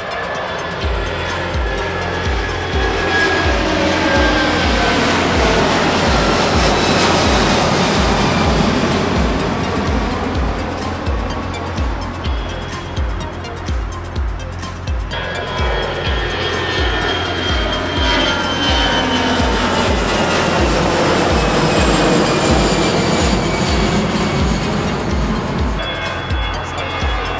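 Airbus A330 jet engines at climb-out thrust passing overhead, their whine falling in pitch as the airliner flies by. About 15 s in, the sound cuts to a second twin-engine jet climbing out, with another falling whine. Background music with a steady beat runs underneath.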